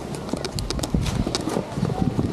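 Snowboard and skis crunching and scraping over hard-packed snow on a busy slope, with irregular sharp clicks and clatters several times a second.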